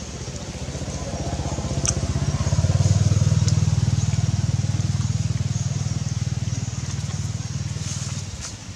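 A motorbike engine passing by: its low, pulsing note grows louder to a peak about three seconds in, then slowly fades.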